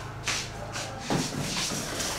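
Shuffling and rustling as a dress-form mannequin is moved and set in place: a few short swishes, then a longer stretch of rustle in the second half.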